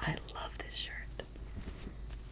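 Soft whispering: a few breathy, unvoiced syllables spoken close to the microphone.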